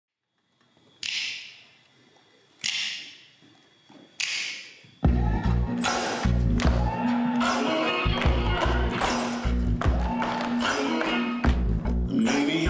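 Three sharp struck hits about a second and a half apart, each ringing off. About five seconds in, a music track with a heavy pulsing bass beat starts, with the sharp strikes of tap shoes on wooden platforms in time with it.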